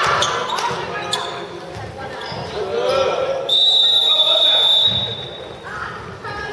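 A handball bouncing on a sports hall floor, with players calling out, echoing in the large hall. Midway a high, steady whistle-like tone holds for nearly two seconds.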